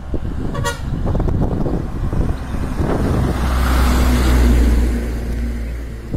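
A bus passing close on the road: a brief horn toot about half a second in, then the diesel engine's low rumble swells, loudest around four seconds in, and fades slightly toward the end.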